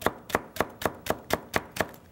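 Chef's knife chopping a green onion on a wooden cutting board: an even run of sharp knocks, about four a second.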